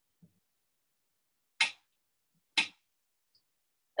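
Two short, sharp clicks about a second apart as the controls of a Thermomix kitchen machine are pressed.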